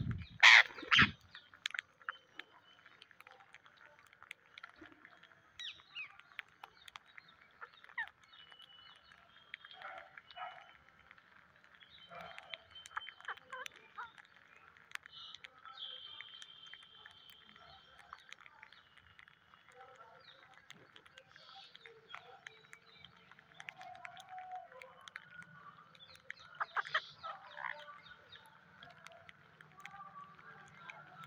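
Flock of rose-ringed parakeets feeding on scattered rice grains on concrete: many small clicks of pecking, scattered calls, one of them drawn out for about two seconds past the middle. A loud flurry of wingbeats comes about half a second in, as a bird flies in close, and another cluster of louder flaps and calls comes near the end.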